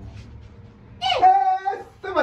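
A loud, high-pitched vocal cry about a second in. It glides down, then is held on one pitch for nearly a second before cutting off: a person's excited exclamation of greeting.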